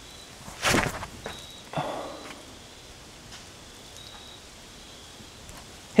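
A disc golf drive thrown from a paver tee: a short, loud scuff of the throwing footwork and release a little under a second in, then a fainter thump about a second later.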